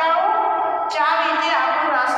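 A woman's voice reading aloud from a book in a drawn-out, sing-song way, close to chanting, with notes held and gliding in pitch.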